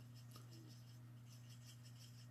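Faint rubbing of a blender pen's tip on cardstock as ink is pulled across the paper, very quiet, over a steady low hum.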